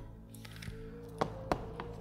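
A few light taps and knocks as an XRAY X4 RC touring car is set down and handled on a setup board, the sharpest about a second in and again half a second later, over faint background music.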